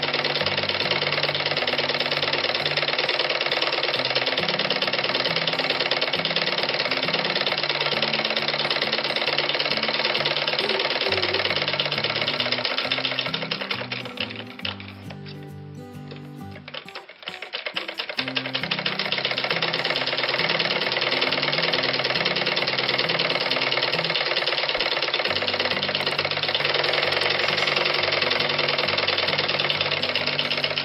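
Sewing machine stitching at speed, its needle and feed mechanism clattering rapidly. It slows and stops for a few seconds about halfway, then runs again. Background music with a bass line plays underneath.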